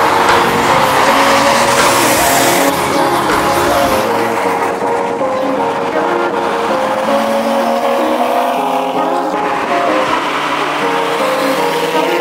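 Sports car engines and exhausts running at speed on the road, mixed with background music that carries a stepping melody.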